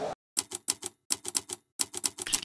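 A typewriter key-strike sound effect: about a dozen sharp clicks in quick runs with short pauses between them, timed to the letters of a logo appearing one by one.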